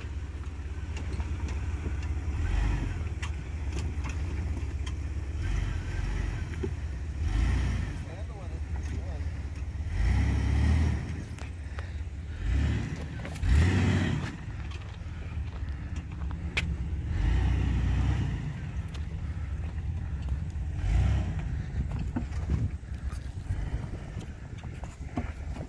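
Jeep Wrangler TJ's engine running at crawling speed as it picks its way over a rock garden, its sound rising and falling several times, with a low rumble of wind on the microphone.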